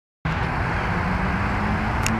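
Steady outdoor background rumble and hiss, starting abruptly about a quarter second in after silence, with no distinct events.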